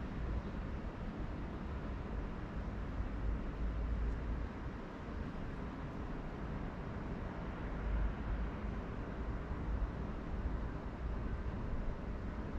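Steady background noise: an even hiss with an uneven low rumble underneath, no distinct events.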